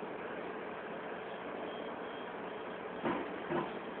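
Steady running noise of a truck, with two short, louder sounds a little after three seconds in, about half a second apart.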